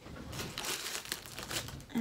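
Crinkling and rustling of packaging handled by hand: irregular, crackly, lasting most of the two seconds.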